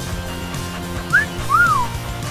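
Two whistled notes over background music: a short rising one about a second in, then a longer one that rises and falls.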